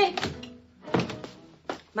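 Three dull thuds about three quarters of a second apart, each a little louder than the last: a radio-drama sound effect in a small room.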